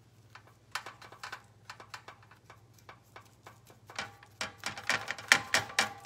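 Paintbrush dabbing decoupage glue onto paper laid over a metal flower: a run of small, irregular ticks and taps that grow quicker and louder from about four seconds in, over a faint low hum.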